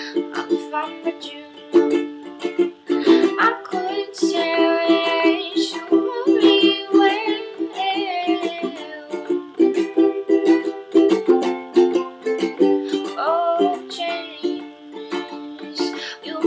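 Ukulele strummed in a steady rhythm in a small room, with a voice singing over the middle stretch.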